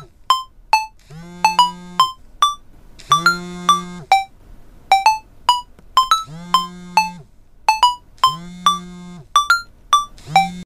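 Mobile phone ringing with a musical ringtone: a melody of quick, short notes over a held low note, repeating over and over.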